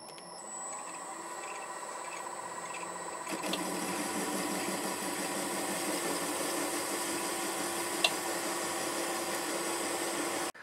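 MN-80 lathe running with a steady hum and whine, building up over the first second. About three seconds in, a steady louder hiss of cutting joins it as the tool turns the brass nut, with one brief click near the end.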